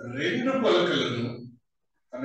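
Only speech: a man talks into a microphone for about a second and a half, then stops.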